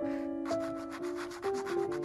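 A red pastel stick scratching on paper in a quick run of short strokes, starting about half a second in, over background music of held notes.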